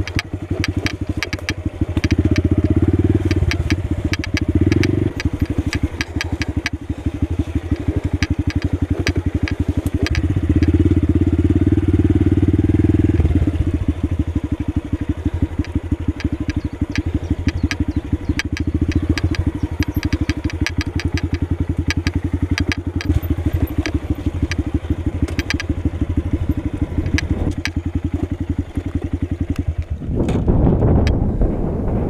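Honda Grom's 125 cc single-cylinder four-stroke engine running under a rider's throttle on a dirt trail, pulling harder a couple of seconds in and again around ten seconds in, then easing off. Scattered clicks and rattles sound over the engine.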